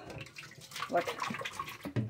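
Water splashing and sloshing as a glass container is rinsed by hand in a stainless steel sink, with small scattered splashes and a sharper knock near the end.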